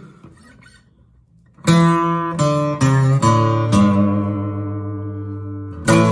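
Acoustic guitar strummed: after a quiet second and a half, a quick run of about five strummed chords, the last one left ringing and fading, then a fresh strum near the end.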